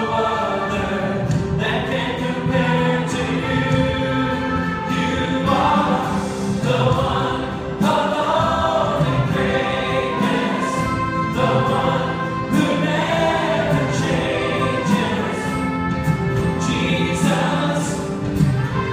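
A church choir and lead singers singing a worship song, accompanied by a band with acoustic guitar.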